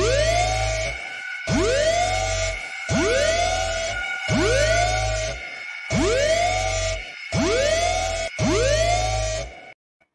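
Alarm-siren sound effect on a spoiler-warning stinger: a wail that rises quickly and then holds, repeated seven times about every second and a half over a low bass rumble. It cuts off abruptly near the end.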